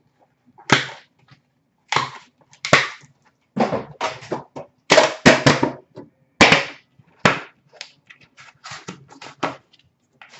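Hands handling a cardboard trading-card box on a glass counter: a string of short, sharp scrapes and knocks as the box is worked open and its lid comes off. The knocks are loudest around the middle and fainter near the end.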